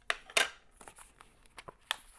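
A small metal pipe-tobacco tin being picked up and handled: a few sharp clicks and light knocks, one about half a second in and one just before the end.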